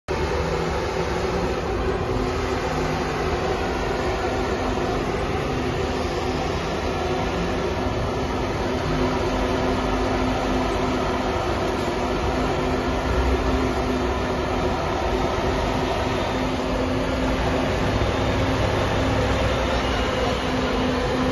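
Large coach bus's engine running steadily at low speed as the bus reverses slowly.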